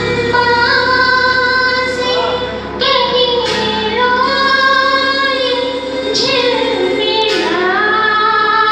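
A woman singing a Hindi film duet into a microphone over a karaoke backing track, holding long notes that slide between pitches.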